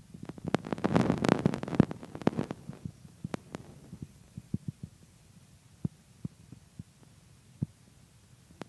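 Muffled low thumps and rumbling from a longboard rolling across office carpet, mixed with footsteps following behind. The rumble is densest for the first couple of seconds, then thins to scattered single knocks.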